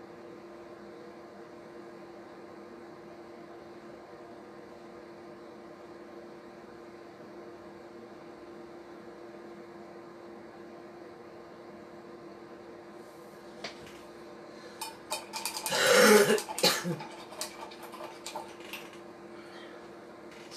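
A steady low hum with a faint hiss. About three-quarters of the way through, a person clears their throat loudly, followed by a few small clicks and knocks.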